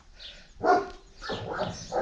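A dog barking twice, a loud short bark just after half a second in and a longer one about a second later.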